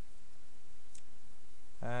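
A single computer mouse click about a second in, over a steady background hiss.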